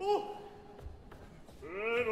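A performer's short vocal cry, dropping in pitch and then wavering for about half a second. After a quiet pause with a few faint ticks, a singer's voice swells into a held operatic note near the end.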